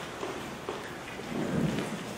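Rustling and light handling noises picked up by the podium microphone, with a few faint ticks and a dull low rumble about one and a half seconds in.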